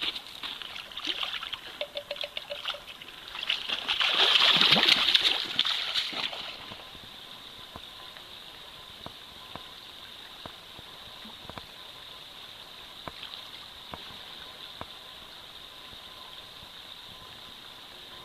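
Splashing in a shallow gravel salmon creek as a released sockeye and the wader's boots churn the water, rising to a louder rush of noise for about two seconds near four seconds in. After that the steady, even trickle of the shallow creek running over gravel.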